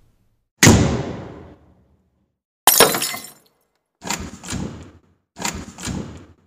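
A series of four crashing impact sound effects, each a sudden loud hit that dies away over about a second, spaced roughly one and a half seconds apart; the first carries a deep boom.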